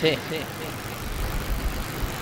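A pause in a man's talk into a microphone: his voice trails off just after the start, leaving a steady background hiss with a low rumble that grows a little near the end.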